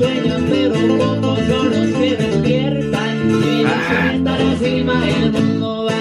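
Music: an acoustic guitar picking a run of quick notes, with lower notes sounding underneath.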